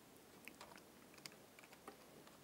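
A few faint keystrokes on a computer keyboard, typed in an irregular run.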